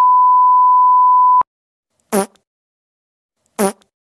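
A steady, single-pitched electronic beep, like an edited-in censor bleep, holds for about a second and a half and cuts off sharply. It is followed by two short, identical pitched blips about a second and a half apart.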